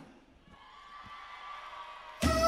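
A quiet pause in a large hall: faint room noise with a faint steady tone that grows slightly louder.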